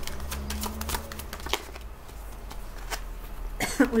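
A deck of tarot cards being shuffled by hand: a run of quick papery clicks and flicks, thinning out after about a second and a half.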